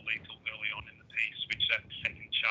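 A man speaking continuously over a thin, telephone-quality line.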